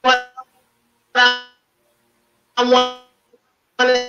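A short musical note on one unchanging pitch, sounded four times about every second and a quarter, each note starting sharply and dying away within half a second.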